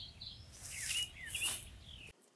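Small birds chirping, with two short rustling scrapes of welded wire fencing being handled, about a second in and again half a second later.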